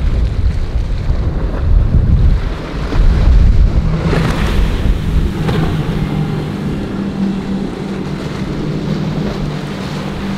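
Wind buffeting the microphone, then the triple outboard motors of a center-console boat running at speed, a steady engine drone coming in from about four seconds, over the hiss of its wake and choppy water.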